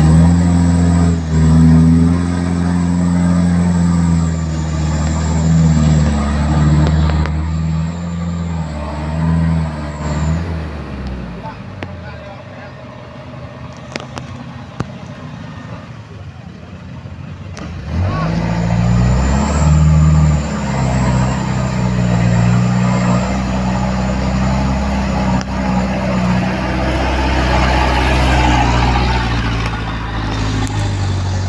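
Heavy Mitsubishi Fuso truck diesel engine working hard with a loaded palm-fruit truck stuck in deep mud on a climb. It drops away about ten seconds in, then revs up again after about eighteen seconds and keeps running loud.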